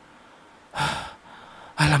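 A single short, sharp gasp, a quick intake of breath about a second in, acted out as someone jolting awake and catching their breath. Speech begins right at the end.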